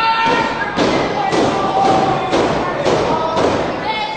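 A run of six thuds in a steady rhythm, about two a second, over voices.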